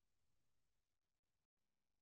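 Near silence: faint room tone, dropping to dead digital silence in the second half.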